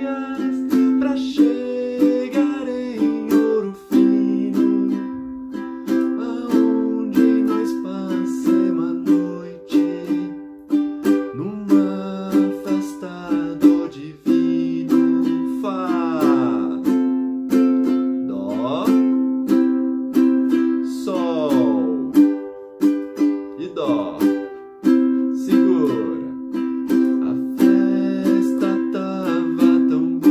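Ukulele strummed in a pop rhythm (down, down, up, up, down), changing between the C, F and G chords.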